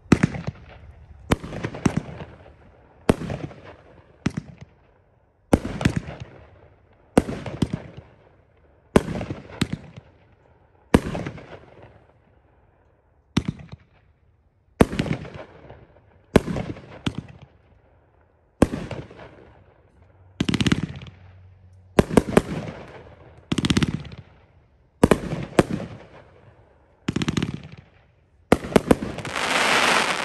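A Sky Bacon 'Cerdo Loco' 27-shot 500-gram consumer fireworks cake firing, a shot about every second and a half, many as a quick double report, each ringing out as it dies away. Near the end, a dense rapid crackle from the strobe and glitter breaks.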